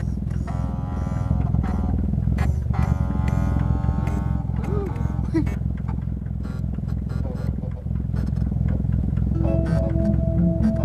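A toy-like toast-making machine runs with a steady low rumble and rapid clicking. Two long held tones, each about a second, sound over it, followed by a couple of short rising squeaks. A short tune of plucked notes begins just before the end.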